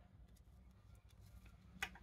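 Near silence with a faint low hum. Near the end comes one short click as a tarot card is tapped or set down on the wooden table.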